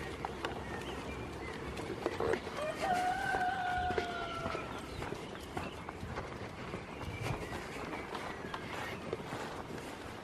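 A goat bleating once in a long, drawn-out call that falls slightly in pitch, lasting about two seconds near the middle. Scattered knocks and clicks run under and around it.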